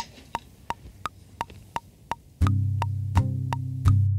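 Metronome click track ticking evenly about three times a second. About two and a half seconds in, a deep bass line from the backing track comes in with a few low kick-drum thumps as the percussive groove begins.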